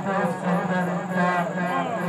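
A man's voice calling out the same word over and over, heard as a cheer of 'shabash' ('well done'), with a steady low hum underneath.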